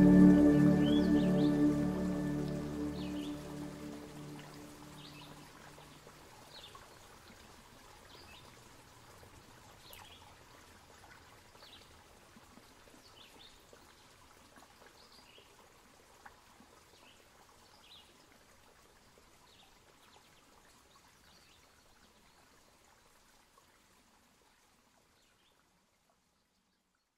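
New-age ambient music with held, layered tones fades out over the first few seconds. It leaves a faint bed of repeated bird chirps over a soft steady hiss, which fades to silence near the end.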